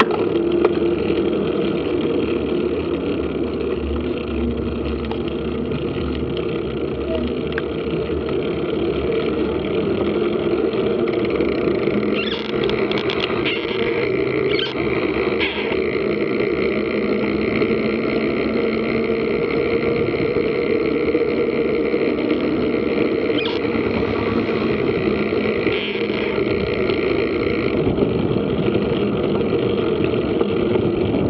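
Steady, distorted wind and riding noise on the microphone of a camera carried on a moving mountain bike, with a few short rattling knocks around the middle.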